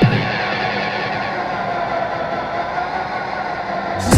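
Electronic dance track in a breakdown: the kick drum and the treble drop out, leaving a muffled, sustained synth drone. The full beat comes back in right at the end.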